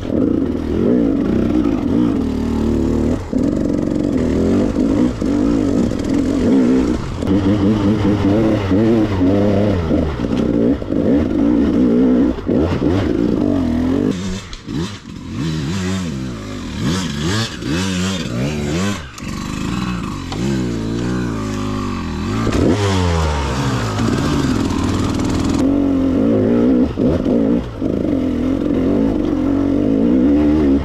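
2015 KTM 300 EXC two-stroke enduro engine being ridden on a rocky woodland trail, revving up and down constantly as the throttle is worked. Through the middle it drops to lower revs, with a few sharp knocks from the bike over rocks.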